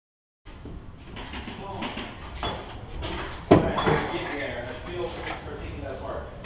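Knocks and clatter of objects being handled on a work floor, with indistinct voices; the sound cuts in about half a second in, and a single loud knock comes about halfway through.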